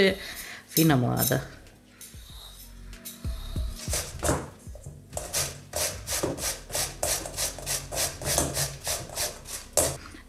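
Zucchini being grated on the coarse side of a stainless-steel box grater into a metal bowl. It starts about halfway through as a quick, even run of rasping strokes, about three a second.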